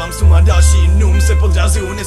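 Hip-hop beat with a heavy sub-bass line and crisp percussion hits, with a vocal layer over it. The bass drops out briefly at the start and again near the end.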